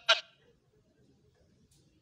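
A man's voice on a microphone clips off a last syllable just after the start, then near silence.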